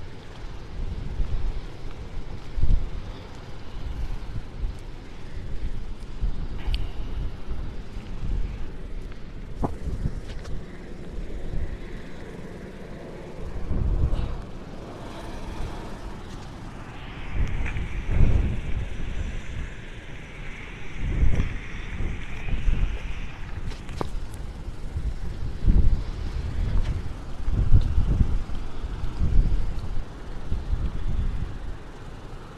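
Strong squall wind ahead of a hurricane, buffeting a phone's microphone in uneven low gusts. A higher hiss joins for several seconds past the middle.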